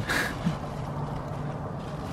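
A short laugh at the start, then a steady low hum of a motor vehicle's engine.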